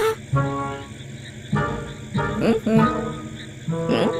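Soft cartoon background music of held notes, with short rising calls laid over it twice, near the start and again about two and a half seconds in.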